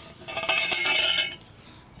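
Metal exhaust pipes from a 4-inch aftermarket diesel exhaust kit knocking and scraping against each other as they are handled: a clatter of about a second with a high metallic ringing.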